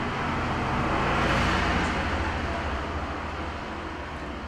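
A road vehicle passing by: a rushing noise that swells about a second and a half in and then fades away, over a steady low hum.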